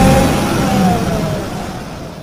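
A car's engine revving as it pulls away, starting suddenly, its pitch sagging slightly, then fading out.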